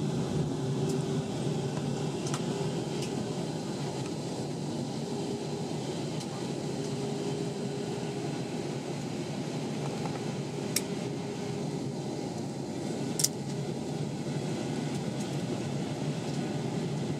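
Steady cabin noise inside an Airbus A320-232 on descent: a continuous rumble of its IAE V2500 engines and rushing air, with a faint held hum. Two brief clicks come about eleven and thirteen seconds in.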